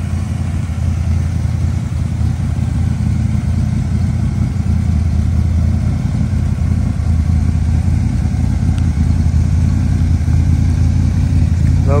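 1966 Corvette's 396 big-block V8 idling steadily.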